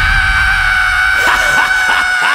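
Heavy metal singer holding one long, steady high-pitched scream over the band's distorted guitars and drums.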